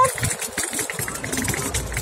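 Wheels of a hard-shell suitcase rolling over brick paving: a steady rattling rumble.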